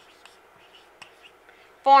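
Marker writing on a whiteboard: faint short scratches and taps of the tip on the board. A woman starts speaking near the end.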